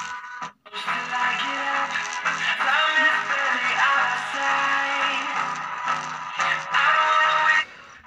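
A song with singing played from a phone through a bare 6-inch speaker driven by a small amplifier board salvaged from a DTH set-top box, loud and clear as a test of the board. The music cuts out for a moment about half a second in, then stops shortly before the end.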